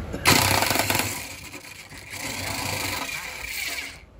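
Electric impact wrench with a long socket extension loosening a bolt on a scooter's front end, run in two bursts: a loud one near the start, then a second, longer one that cuts off at the end.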